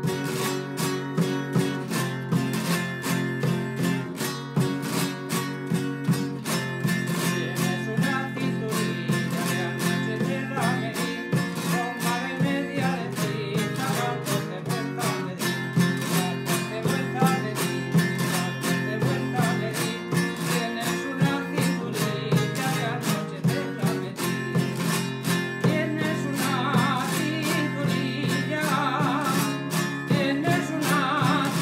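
Traditional Spanish guitar strumming a malagueña accompaniment in an even rhythm, with rasgueo strums alternating with knocks on the soundboard. A man starts singing over it in the last few seconds.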